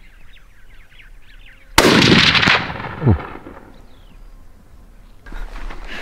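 A single rifle shot from a Sako hunting rifle: a sudden loud crack that rings on for under a second as it fades. A man's low "ooh" follows about a second later.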